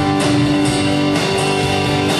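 Live rock band playing an instrumental passage, with guitars to the fore.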